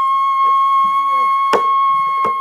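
Daegeum (Korean bamboo transverse flute) holding one long, steady high note in a sanjo passage, with a single sharp janggu (hourglass drum) stroke about one and a half seconds in.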